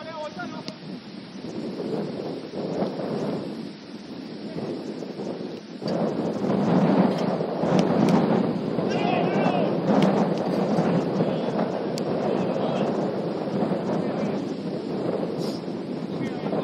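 Wind rumbling on the camera's microphone as a steady noise that grows louder about six seconds in, with faint voices briefly audible.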